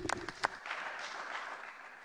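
Applause from the senators' benches: a couple of separate claps, then steady clapping from about half a second in that fades toward the end.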